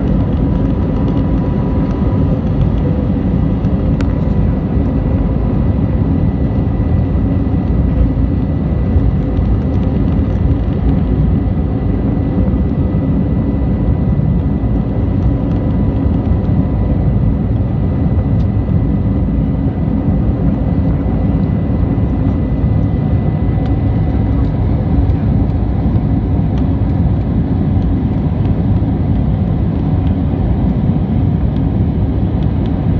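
Cabin noise of an Airbus A320neo climbing out after takeoff: its turbofan engines at climb power heard inside the cabin as a steady, loud, deep noise. Faint high steady whine tones ride on top and fade out partway through.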